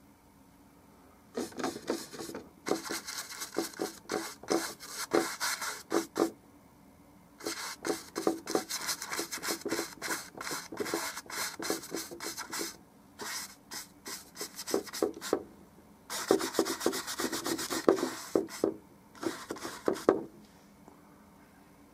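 Paintbrush rubbing paint onto a canvas in quick, scratchy back-and-forth strokes, coming in runs of a few seconds each with short pauses between, starting about a second in.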